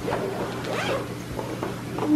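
A zipper being pulled open around a soft insulated lunch bag, in several short scratchy pulls.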